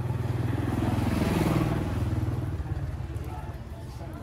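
A motorbike passing close by, its small engine growing louder to a peak about halfway through and then fading as it goes away.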